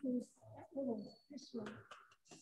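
Faint, indistinct talking in a low voice, away from the microphone, in short phrases.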